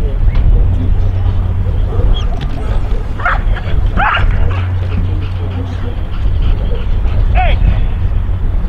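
A dog gives three short, high barks spaced a few seconds apart, over a steady low rumble.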